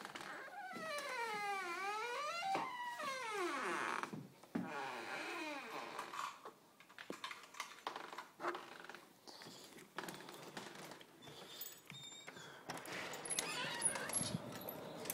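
Dog whining with excitement at the door: high whines whose pitch slides down and back up, several in the first few seconds, then scattered clicks and knocks.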